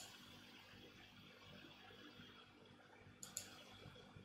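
Near silence broken by faint computer mouse button clicks: one at the very start and a quick pair a little after three seconds in.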